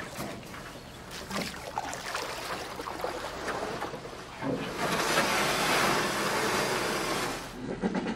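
Audience applauding for about three seconds, starting a little past halfway and stopping shortly before the end; before it, the low murmur of a roomful of people.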